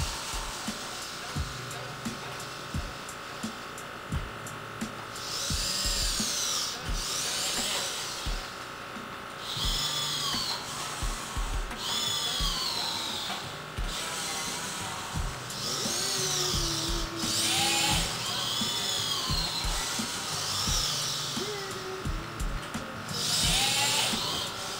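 Servo motors in a 3D-printed InMoov robot's arm whining in short spurts as the arm follows a person's gestures, about seven times, each whine rising then falling in pitch, with light clicks in between.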